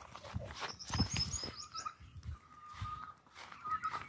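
Birds calling: a quick run of high chirps, then a thin, steady call lasting about two seconds, over a few low thumps about a second in.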